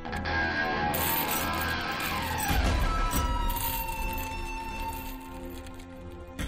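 Film score music: held tones over a deep low rumble. About two seconds in, a high tone slides downward and settles into a long held note.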